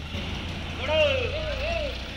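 A high-pitched voice calling out in long, swooping rises and falls, over the low steady hum of a vehicle engine running nearby.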